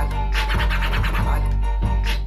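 DJ scratching on a Numark controller's jog wheel over a hip hop beat with heavy bass, the scratches coming as quick repeated strokes several times a second.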